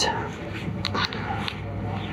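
Hands pressing and smoothing soaked watercolour paper flat on a board: soft rustling of the wet paper with a few small crackles.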